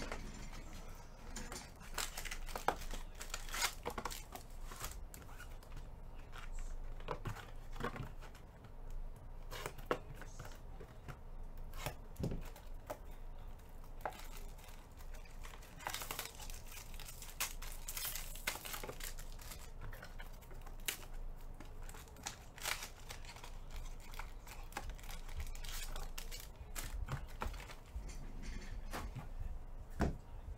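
Plastic shrink-wrap being torn and crinkled on sealed trading-card boxes, with cardboard boxes handled and set down: an irregular scatter of crackles and light knocks.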